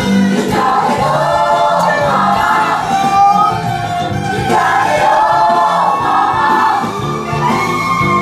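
Choir singing a song, with many voices together in a sustained, flowing line.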